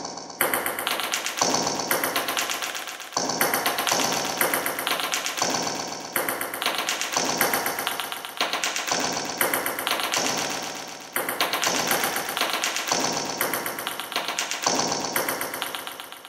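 A rhythmic percussive audio sample played back dry from a browser Tone.js player, with the reverb not yet applied. Sharp strikes come about once a second, each fading before the next.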